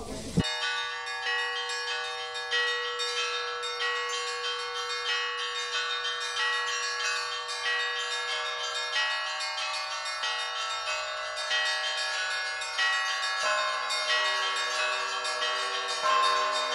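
Bells chiming in a quick, even run of struck notes over a steady held tone; near the end the held tone drops and lower notes ring on.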